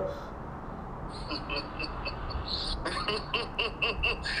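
A man's evil laugh heard through a phone's speaker on a video call: short repeated bursts start about a second in and grow louder near the end.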